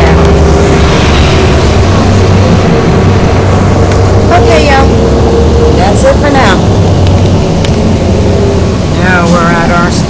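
City bus running along the road, heard from inside the passenger cabin: a loud, steady low drone of engine and road noise.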